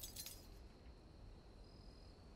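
Near silence, with a few faint clinks in the first half second as the tail of a crash dies away.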